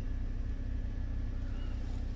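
Steady low hum of a Toyota Veloz's 1.5-litre four-cylinder engine idling, heard inside the cabin.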